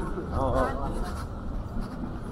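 Voices of passers-by on a pedestrian street: a short stretch of talk about half a second in, over a steady low rumble of street noise.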